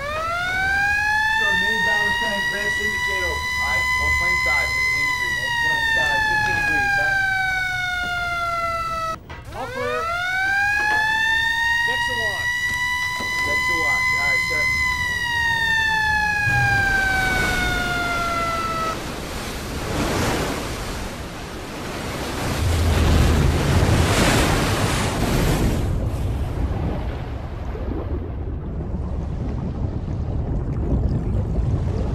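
Submarine dive alarm: two long siren wails, each rising quickly, holding and then sliding slowly down, the second starting about nine seconds in. After them comes a loud rushing of air and water as the ballast tank vents open and the boat submerges.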